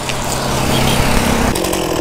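Chainsaw running at a steady pitch right at the climber's position as a freshly cut top section of trunk is pushed off. The steady note breaks off about one and a half seconds in.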